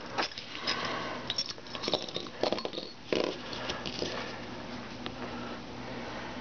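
Handling noise of rustling with scattered light clicks over the first few seconds, settling into a faint steady hum for the rest.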